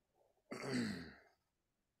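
A man's single breathy, voiced sigh, falling in pitch and lasting under a second.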